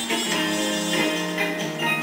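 Instrumental music with no singing: held melody notes over a moving bass line, an instrumental passage of the song.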